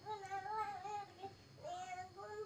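A faint child's voice in the background, singing or calling in two drawn-out phrases, each about a second long.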